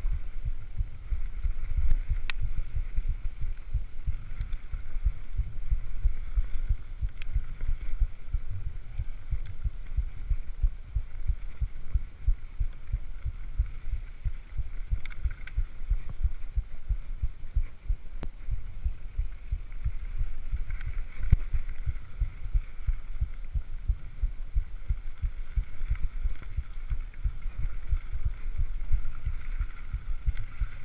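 Specialized mountain bike riding fast down a rough dirt singletrack. Bumps and vibration from the trail come through the camera mount as a continuous low rumble and thudding. A few sharp clicks or knocks from the bike sound over the rumble.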